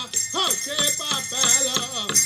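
A man singing a Native American powwow-style chant, his voice gliding up and down in short phrases, over a steady rattling jingle, with no drum strokes.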